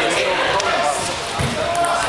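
Indistinct voices chatting, with a few light clicks of a table tennis ball bouncing and one dull thump a little past the middle.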